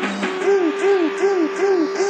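Electronic club dance music from a 1994 session tape: a synth riff of short arched pitch swoops repeats about four to five times a second over a steady held tone, with little bass under it. The riff breaks off for a moment at the start and then resumes.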